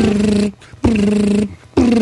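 A man's voice imitating an electric beard trimmer buzzing: three steady, even-pitched buzzes of about half a second each, with short gaps between them, the third starting near the end and running on.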